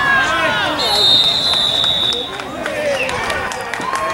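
Spectators yelling and cheering over one another during a football play, with a whistle blown once, steadily for about a second and a half, near the start.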